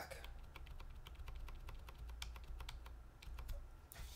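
Light, irregularly spaced clicks from a computer keyboard, a dozen or more over a few seconds, as the spreadsheet is scrolled, over a faint steady low hum.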